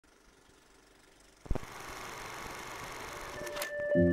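A click about a second and a half in, then a steady hiss that swells slightly and cuts off near the end, as sustained ambient music chords begin.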